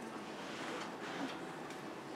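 Quiet classroom room tone: a low steady hum with a few faint, irregular small ticks.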